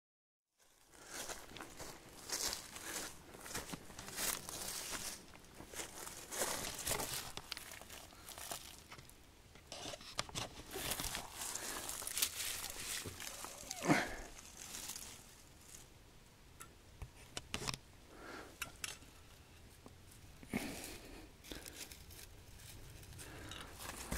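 Dry leaf litter and forest debris rustling and crunching in irregular bursts under hands, with handling noise and scraping as a granite rock is moved by hand. A louder scrape comes about fourteen seconds in.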